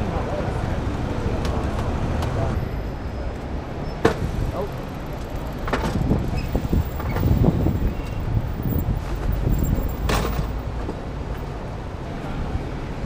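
City road traffic with double-decker buses and cars running past, a steady low rumble. A sharp click about four seconds in and another knock near the end stand out.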